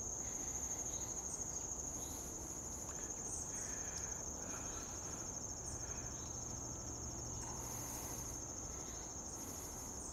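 Insects trilling in one steady, high-pitched, unbroken trill, with a few faint short chirps scattered over it.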